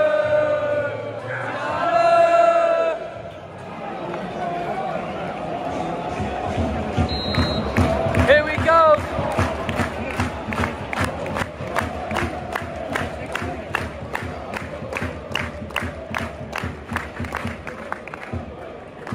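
Football crowd singing a drawn-out chant, then clapping in unison at about two claps a second.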